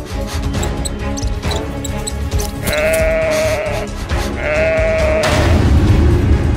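Background music with two sheep bleats laid over it as sound effects, one after the other in the middle of the stretch, each about a second long.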